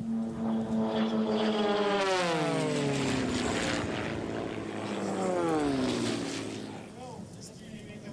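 Two Lancair Legacy propeller race planes fly past one after the other at racing speed. Each engine's drone drops in pitch as it goes by, the first about two seconds in and the second about five seconds in.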